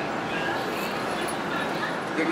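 Outdoor street ambience: a steady noisy background with faint, short high-pitched calls in the distance.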